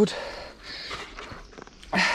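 Riding noise from a loaded gravel bike rolling along a paved path, with a steady low wind rumble on the microphone and a few faint light clicks near the end.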